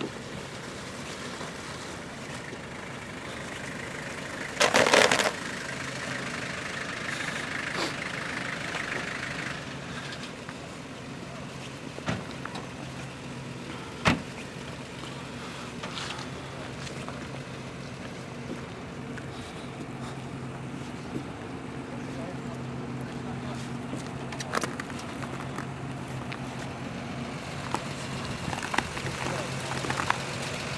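Off-road 4x4 engines idling, a steady low hum under faint background voices, with a brief loud rush of noise about five seconds in and a few sharp knocks.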